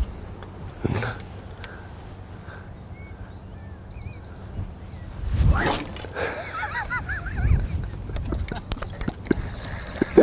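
Wind rumbling on the microphone, with a sharp swish about five and a half seconds in as a 13-foot Free Spirit carp rod is whipped through a long overhead cast. Faint bird chirps follow.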